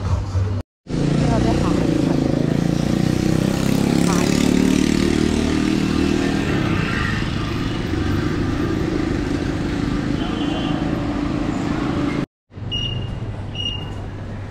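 Busy street traffic: motorcycles and scooters passing close, with people's voices around. The sound cuts out completely for a moment just after the start and again near the end, with a couple of short high beeps after the second gap.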